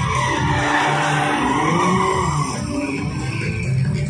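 Stunt-show vehicle engine revving, with tyres skidding, over loud music. The pitch dips and then rises through the middle.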